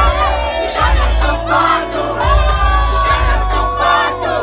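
Loud amplified music with a heavy, pulsing bass, a performer's voice on the microphone and a crowd shouting and singing along.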